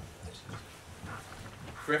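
A man's voice, faint and halting over low room noise, then speaking up clearly just before the end.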